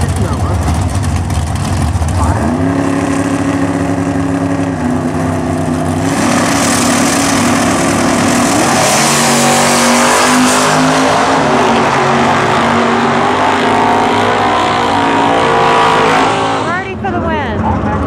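Two drag-racing cars' engines on the start line. They idle, then are held at raised revs from about two and a half seconds in. They launch about six seconds in, running loud at full throttle with pitch rising and stepping through gear changes as the cars pull away down the strip, and the sound drops off near the end.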